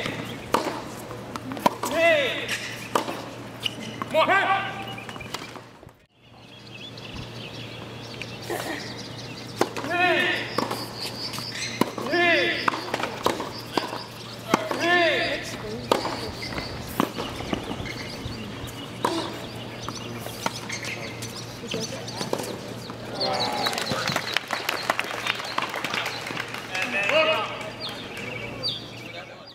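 Tennis rally on a hard court: repeated sharp pops of the ball coming off the rackets, with short pitched sounds between the shots and an occasional voice. The sound drops out briefly about six seconds in.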